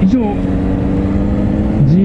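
Suzuki GSR400 inline-four motorcycle engine running at steady revs while riding, a steady engine note over a continuous wind and road rush. Brief talk is heard at the start and again near the end.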